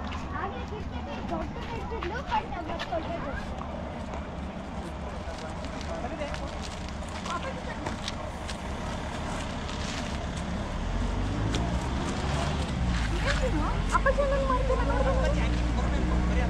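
Indistinct talk and chatter from several people outdoors. About eleven seconds in, a low steady engine hum comes in and grows louder.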